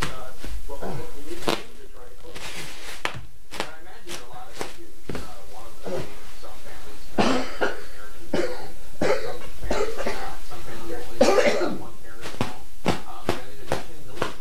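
A thin plastic bag crinkling and rustling in irregular bursts as it is handled and pulled open.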